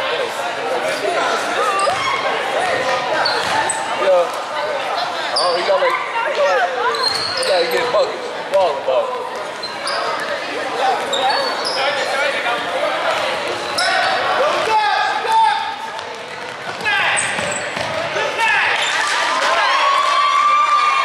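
Basketball dribbled on a hardwood gym floor, with short squeaks of sneakers on the boards and players' and spectators' voices echoing in the gym.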